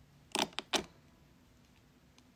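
A woman says a single word a moment in; otherwise quiet room tone.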